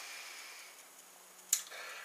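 Quiet pause with faint room hiss and one short, sharp click about one and a half seconds in.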